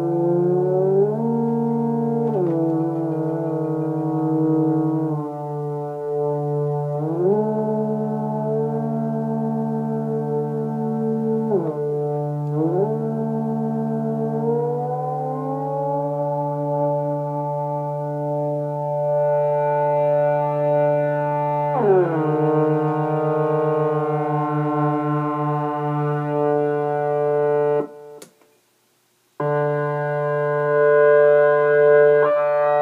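Moog Multimoog analogue synthesizer holding a note while the pitch of oscillator A is bent up and down with a voltage-control pedal, sliding against the steady low pitch of the other oscillator in a series of glides, some quick and one slow. Near the end the sound cuts off with a click for about a second and a half, then comes back.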